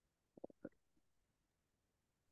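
Near silence, with a quick cluster of four faint short clicks about half a second in.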